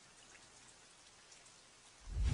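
Near silence: a faint, even hiss with light patter, rising slowly out of silence.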